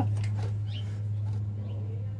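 A steady low hum with a few faint, brief high chirps and light clicks near the start.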